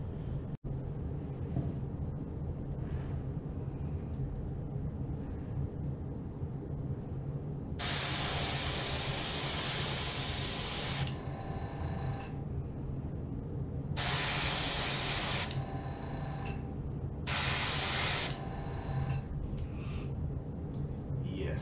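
Airbrush spraying paint onto a fishing lure in three bursts of hiss: the first about three seconds long, then two shorter ones, each trailing off into a fainter hiss. A steady low hum runs underneath.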